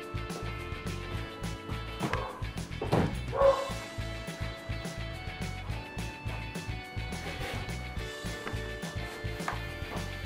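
Background music with steady held notes, and a pet dog barking, loudest about three seconds in.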